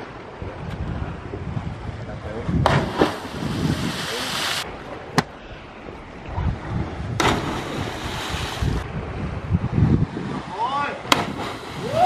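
Wind rushing over the microphone above the sound of the sea surf, with two louder hissing stretches and two sharp clicks. A brief voice is heard just before the end.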